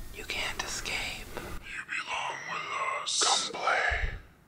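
A voice whispering words too breathy to make out, with a sharp hiss about three seconds in.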